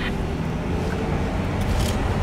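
Car cabin noise while driving: a steady low engine and road rumble, with a few faint clicks near the end.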